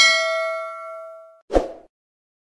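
Notification-bell 'ding' sound effect as the bell icon is clicked: one bright ring that fades out over about a second and a half. A short low thump follows near the end.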